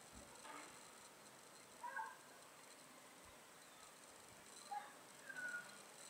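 Near silence, broken by a few faint, short high chirps about two seconds in and again near the end.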